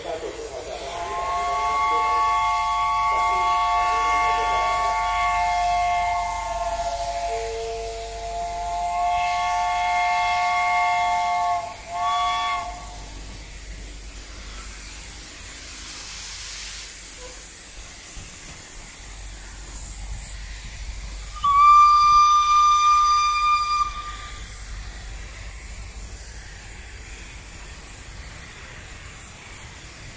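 Steam locomotive whistle sounding a chord of several notes: a blast of about five seconds, a brief lower note, a blast of about two and a half seconds and a short toot. About ten seconds later a single-note whistle sounds, loud and steady, for about two seconds.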